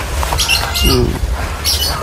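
Outdoor field ambience: a few short, high bird chirps over a steady low rumble, with one brief, low call-like sound about a second in.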